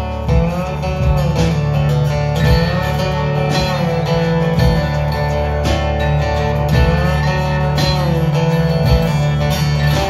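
Instrumental country break on an acoustic guitar played flat on the lap with a slide, its notes gliding up and down, over a strummed guitar accompaniment at about one stroke a second.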